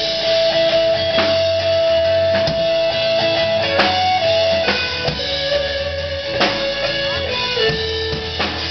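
Live rock band playing an instrumental passage on guitars, bass and drum kit. One long held note runs over the drums and steps down in pitch twice.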